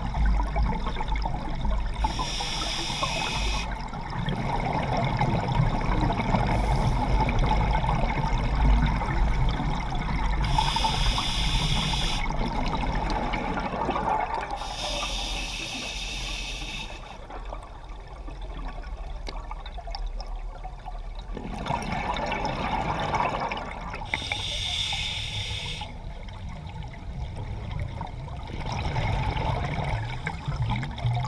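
Underwater breathing through a scuba regulator: four hissing breaths a few seconds apart, with gurgling exhaust bubbles between them.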